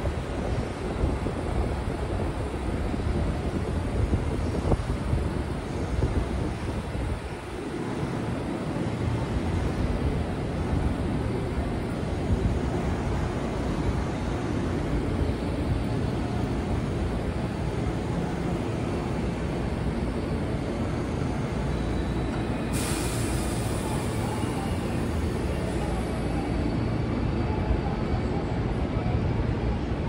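JR 207 series electric commuter train standing at the platform, its equipment giving a steady low rumble, with a low tone falling in pitch about seven seconds in. About 23 seconds in comes a sudden, sharp hiss of released compressed air lasting about four seconds.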